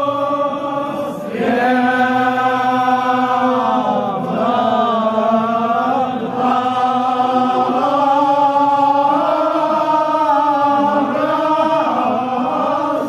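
Male voice chanting a Kashmiri marsiya, a Shia elegy, through a microphone, in long held, slowly gliding notes. The phrases break briefly about a second in, around the four- and six-second marks, and near the end.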